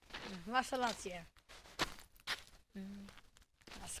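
A voice speaking briefly, then a few sharp knocks and rustles as the camera is jostled against a jacket.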